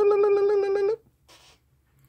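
A man humming one held note with a slight wobble; it stops about a second in.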